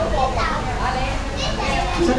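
Background chatter of several people talking over one another, children's voices among them.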